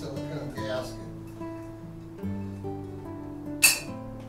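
Acoustic guitar music with plucked, sustained notes that change every second or so, and one short sharp noise near the end.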